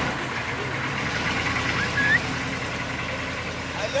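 Engine of a military pickup truck loaded with soldiers running steadily as the truck pulls away down a dirt road.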